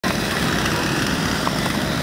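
Chainsaw engines idling with a steady, rough running note.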